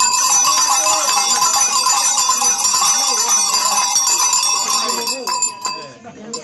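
Many bells shaken together by a masked Pulcinella group in a loud, continuous jangling that starts suddenly between chanted verses. It thins out and stops near the end.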